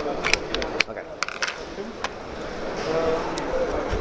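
Sharp metallic clicks and clatter from the spring guide and parts being fitted back into the rear of a Silverback HTI airsoft sniper rifle's receiver during reassembly. There are several quick clicks in the first second and a half, then it goes quieter.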